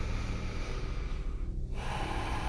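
A slow breath through the nose, heard as a soft airy hiss that fades out about one and a half seconds in, with the next breath starting near the end.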